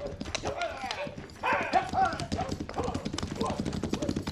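Radio-drama sound effect of horses galloping away: a rapid, continuous clatter of hoofbeats, with a voice breaking in briefly about a second and a half in.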